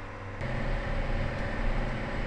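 John Deere 9R tractor heard from inside the cab: a steady low engine hum. It gets louder and fuller about half a second in, as the tractor drives along.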